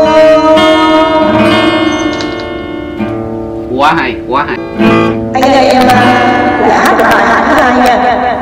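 Acoustic guitar and held notes ringing out for the first few seconds, a few spoken words at about four seconds in, then the acoustic guitar picked and strummed again.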